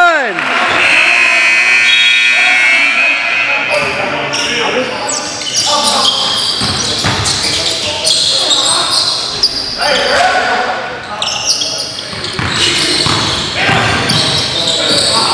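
Basketball game sounds in an echoing gym: the ball bouncing on the hardwood floor and players' indistinct voices.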